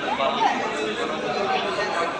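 People talking: overlapping background chatter of voices, with no clear words.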